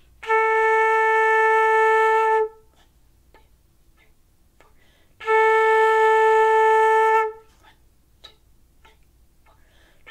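Concert flute sounding two long, steady A notes, each held about two seconds with a pause of about three seconds between them. This is a beginner's whole-note and whole-rest exercise on A. A third A begins at the very end.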